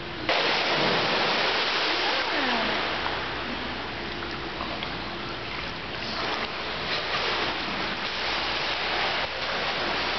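Steady rushing and splashing water noise of an indoor swimming pool, starting abruptly a moment in, with a few faint voices echoing.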